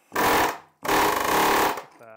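Pneumatic air chisel (Ingersoll Rand air hammer) with a flat chisel bit hammering scaly rust off a steel truck frame, in two bursts: a short one, then a longer one of about a second.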